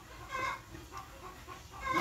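Faint clucking of chickens: a few short calls, the clearest about half a second in.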